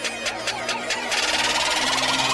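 Electronic music build-up of a DJ intro: a fast, even run of beats at about seven a second, then about a second in a hissing noise sweep swells in and the level climbs.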